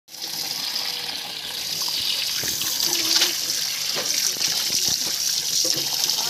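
A steady stream of water running into a plastic tub full of freshly caught fish, with scattered splashes as the water and fish move.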